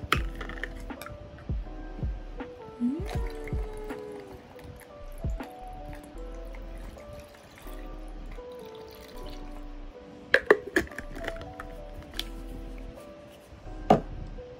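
Background music with held notes, over bottled iced coffee being poured onto ice in a plastic cup. A few sharp clicks come about ten seconds in.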